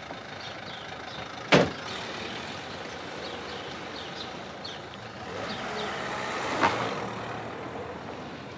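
A taxi's door shut once with a sharp slam about a second and a half in, over the steady sound of a car engine running and street noise; a lighter knock comes near the end.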